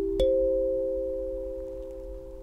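Clear acrylic plate kalimba: one metal tine plucked by a thumb about a quarter second in, its bell-like note ringing out over an earlier lower note and slowly fading.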